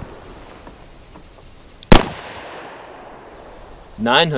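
A single .38 Special +P shot from a Smith & Wesson Model 637 snub-nose revolver with a 1⅞-inch barrel: one sharp crack about two seconds in, followed by an echo that fades.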